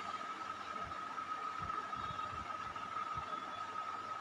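Quiet background room tone: a steady low hiss with a faint, constant high tone running through it.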